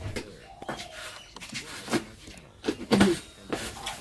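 A few light knocks and clatters of things being handled in a small room, with brief faint voices in between.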